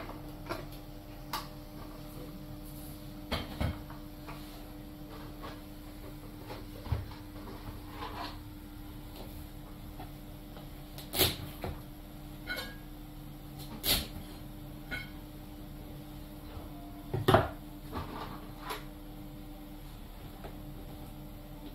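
Scattered knocks and clicks of crab shell and a kitchen knife on a wooden cutting board as a chef handles and chops a crab, with three sharper knocks in the second half, over a faint steady hum.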